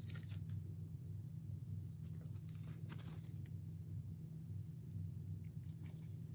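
Gloved hands handling a trading card and its clear plastic sleeve and holder: a few short crinkly plastic rustles, near the start, around the middle and near the end, over a steady low hum.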